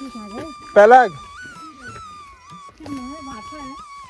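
Background music with a held, gliding melody line and a voice under it; about a second in, one short, loud dog yelp that rises and falls in pitch.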